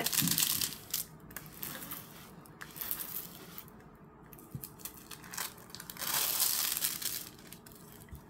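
Clear plastic film on a diamond painting canvas crinkling as it is smoothed flat by hand. Loud rustling for about the first second and again about six seconds in, with softer rustles between.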